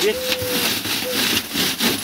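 Dry moss being rubbed by gloved hands back and forth across an expanded-metal mesh screen, grating it into fine substrate. It makes a scratchy rubbing noise of quick, repeated strokes.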